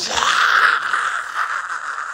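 A man's mouth-made flamethrower sound effect: a long rasping hiss that slowly fades.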